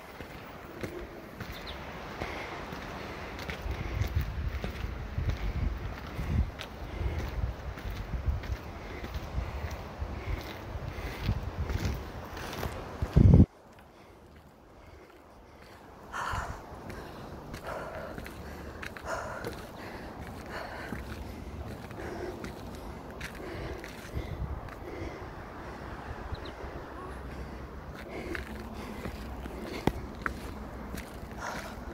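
Footsteps on a gritty dirt path, with wind rumbling on the phone's microphone through the first part. A single sharp knock comes just under halfway through, then it drops to near quiet for a couple of seconds before the steps come back, fainter.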